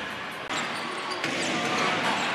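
Basketball arena sound during live play: a steady crowd murmur, with a ball being dribbled on the hardwood court and a few short, high sneaker squeaks.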